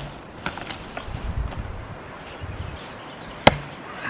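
A splitting axe strikes a green birch firewood round once, sharply, about three and a half seconds in, with lighter knocks before it. The axe bites into the green wood and stays stuck rather than splitting it through.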